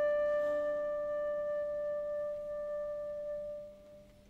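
Solo concert flute holding one long note, slurred up from the note before. It fades away near the end.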